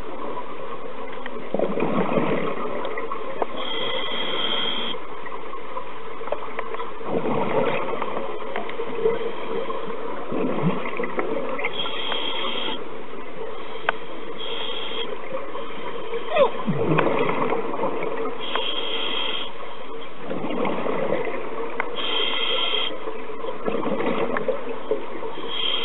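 Scuba diver breathing through a regulator underwater, heard through the camera housing: a short hissing inhale alternating with a rumbling rush of exhaled bubbles, a breath every five seconds or so.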